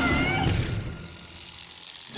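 A cat's short yowl at the start, a pitched cry that bends up and down, over a low rumbling noise; the sound then falls away to a quieter hush.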